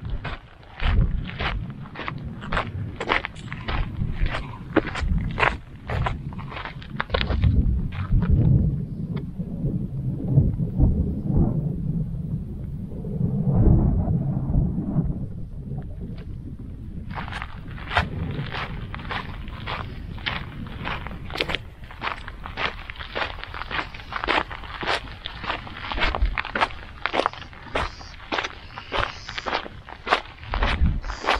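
Walking footsteps on a dirt and gravel path, about two steps a second. For several seconds in the middle the steps fade under a low rumble, then return.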